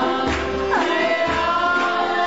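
Voices singing a devotional chant together over the sustained chords of a harmonium, with one voice sliding down in pitch just under a second in.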